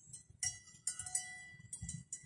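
Metal bells clinking and ringing irregularly, with four or five strikes whose tones ring on for up to about a second.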